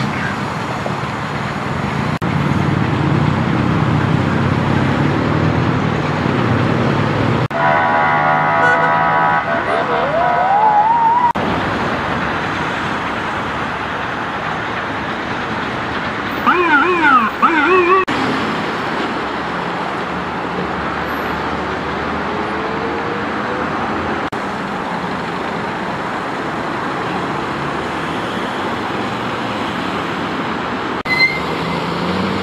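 Steady night road-traffic noise, with a vehicle horn blaring and a rising whine about eight seconds in. A short burst of an emergency-vehicle siren comes a little past halfway, its pitch wavering quickly up and down.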